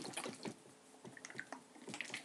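Plastic squeeze bottle of thick Sriracha chili sauce being shaken by hand: faint, irregular soft strokes of the sauce moving inside.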